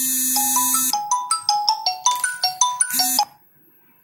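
A short electronic jingle in the manner of a ringtone: a buzzy held tone, then a quick run of about a dozen beeping notes stepping up and down, ending on the buzzy tone again and cutting off abruptly a little over three seconds in.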